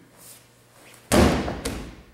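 A judo partner thrown with sode tsurikomi goshi landing on the mat in a breakfall: one sudden loud thud about a second in, then a second, smaller slap half a second later.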